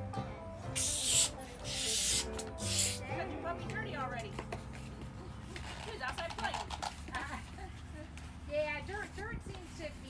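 Balloon pump hissing in a few quick bursts as it inflates a long twisting balloon, followed by the rubbery squeaking of the latex balloon being twisted into shape.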